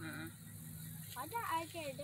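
Faint voices of people talking, over a low steady hum.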